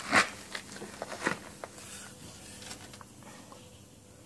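Handling and movement noise: scattered light clicks and rustles, the sharpest just after the start and fainter ones over the next second or two.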